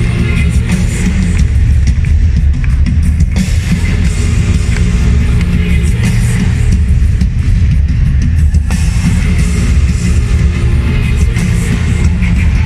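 Live pop-rock band with drums playing loudly through an arena sound system, heard from among the crowd, heavy in the bass.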